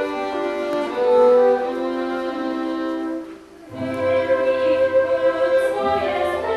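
Instrumental stage music led by bowed strings, playing sustained notes and chords. It breaks off briefly about three and a half seconds in, then resumes with low bass notes underneath.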